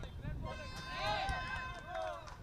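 Voices calling out across an open cricket field, two short shouts about a second in and again near the end, over a low outdoor rumble.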